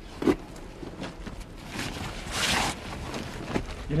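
Bergen rucksack being packed by hand: fabric and plastic rustling as a rock is stuffed inside, loudest about two seconds in.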